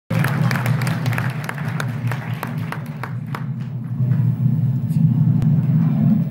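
Audience applause, separate claps thinning out over the first three or four seconds, over a steady low rumble of crowd noise.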